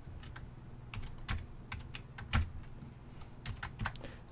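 Typing on a computer keyboard: a run of irregular, separate keystroke clicks, fairly quiet.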